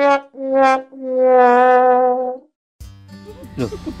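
Brass music sting laid over the picture: a horn sounds the same note in two short blasts, then holds it long, cutting off abruptly about two and a half seconds in. A voice speaks briefly near the end.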